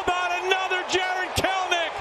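A broadcaster's voice speaking: play-by-play commentary on a home run.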